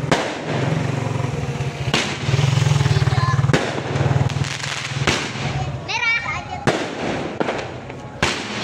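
Aerial fireworks shot one after another and bursting overhead: about six sharp bangs, roughly one every second and a half, over a steady low hum.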